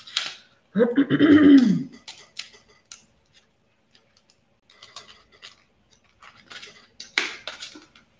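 A throat-clear, then scattered plastic clicks and rattles as a small plastic box of seed beads is handled and eased open. The loudest rattle comes near the end.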